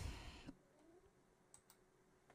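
Near silence: room tone. A sound dies away in the first half second, and one faint click comes about one and a half seconds in.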